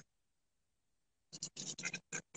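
Dead silence for over a second, then faint, short scratchy noises near the end.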